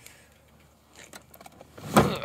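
Quiet handling sounds: a few faint rustles and small clicks, then one sharp knock with a short ring near the end as a hand takes hold of a wooden bed frame.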